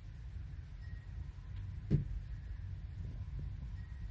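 Quiet room background: a low steady hum with one short, soft thump about two seconds in.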